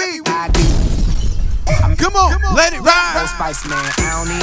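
Party-mix music at a DJ transition between tracks: a sudden crash sound effect with deep bass about half a second in, then a voice over the bass, just before the next track's beat comes in.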